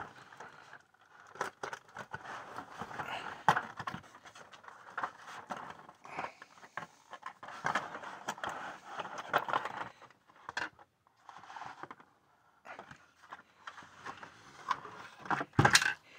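Cardboard box and clear plastic packaging handled and pulled apart as a diecast model car is taken out: irregular scraping, rustling and sharp clicks, loudest near the end.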